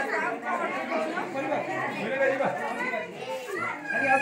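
Several people talking at once: overlapping background chatter with no single clear speaker.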